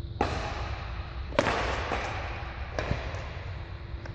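Badminton rackets hitting a shuttlecock in a rally: three sharp hits a little over a second apart, the middle one the loudest, each ringing on in the echo of a large hall.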